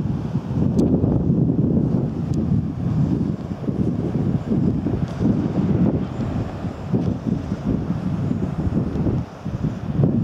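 Wind buffeting the camera's microphone: a gusty low rumble that rises and falls unevenly.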